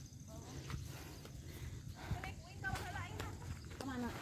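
Footsteps on a dirt path, a few soft irregular steps, with faint voices in the background.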